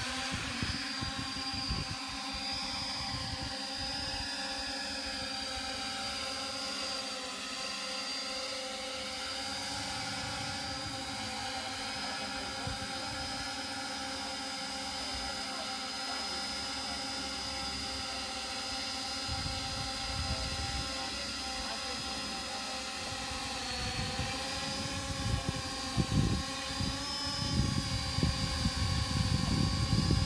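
Y6 coaxial tricopter drone's six electric motors and propellers running steadily in flight, a chord of steady whining tones. Low gusty rumbling comes and goes in the second half and is loudest in the last few seconds.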